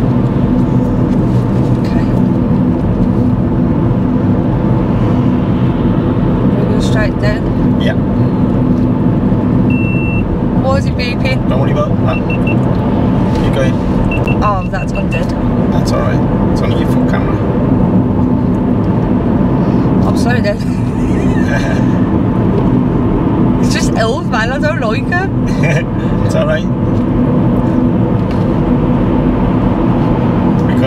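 Steady engine and tyre noise heard inside a small car's cabin, cruising in fourth gear at dual-carriageway speed.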